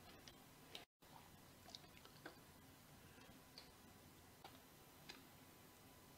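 Near silence: faint room tone with a few scattered faint ticks, and a brief dead-silent gap about a second in.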